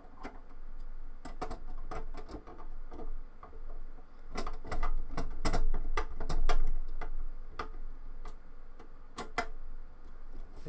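Phillips screwdriver tightening screws that hold a 3.5-inch hard drive in a steel drive cage: irregular metallic clicks and ticks, loudest around the middle.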